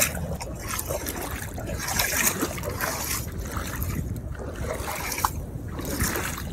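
Shallow seawater sloshing and trickling as someone wades through it, in irregular small splashes over a steady low rumble.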